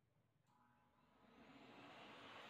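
Faint at first: about half a second in, an electric motor starts and spins up, with a slowly rising whine and a swelling hiss of air.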